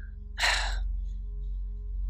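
A woman's short, audible breath, lasting about half a second, comes a little under half a second in. It sits over a faint, steady hum of background tones.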